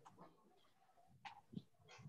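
Near silence: room tone in a pause of speech, with a couple of faint short ticks about a second and a half in.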